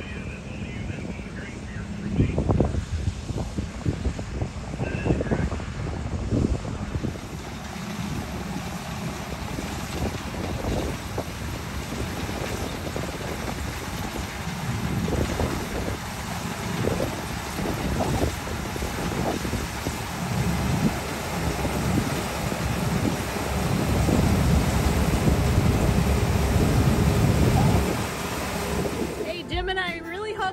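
Wind buffeting the microphone over the running of a combine harvester working in wheat, growing louder in the last few seconds as the combine comes close.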